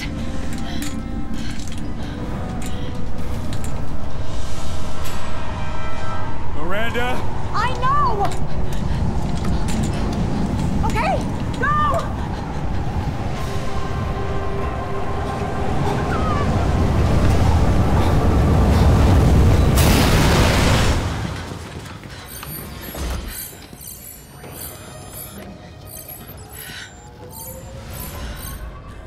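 Film sound effects of a sandstorm: a deep rumble and roar under dramatic score music, building to a loud burst about 20 seconds in that cuts off suddenly. Quieter music follows near the end.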